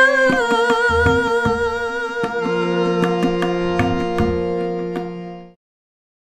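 Closing bars of a Bangla song: a woman's voice holds a last note with vibrato over tabla strokes, then a steady accompanying chord carries on alone. The music stops abruptly about five and a half seconds in.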